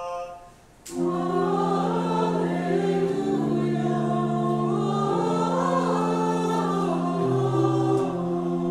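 Church choir singing a slow liturgical chant in long held chords, the chord changing about every two seconds. A short click comes just before the singing starts, about a second in.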